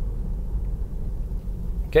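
Steady low road and tyre rumble inside the cabin of a Tesla Model 3 driving at about 25 mph.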